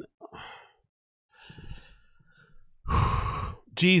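A man sighing: a faint breath in, then a louder, breathy exhale lasting under a second near the end.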